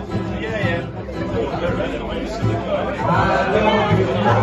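A man singing into a microphone through a PA, with acoustic guitar accompaniment, over the chatter of a pub audience.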